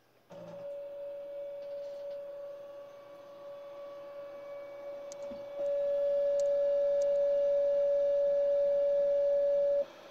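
Stepper motors of a hot-wire CNC foam cutter driving the cutting wire at a fast, constant speed, making a steady whine. It gets clearly louder about halfway through and stops just before the end.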